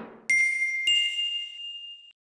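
Two bright chime dings from a logo sound effect, a little over half a second apart, the second higher in pitch; each rings on and slowly fades.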